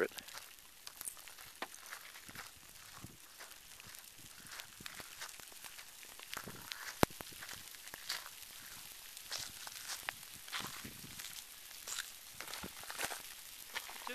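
Faint crackling and ticking of an active pahoehoe lava flow at close range: the cooling crust of solid rock cracking as molten lava moves beneath it, irregular small clicks over a soft hiss, with one sharp snap about seven seconds in.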